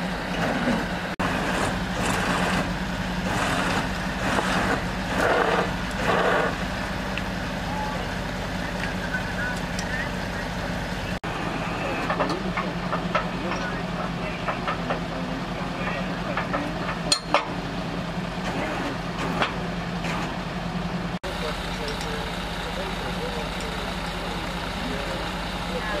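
A tow truck's engine runs steadily at idle, with people talking in the background. A few sharp metallic knocks come about two-thirds of the way through.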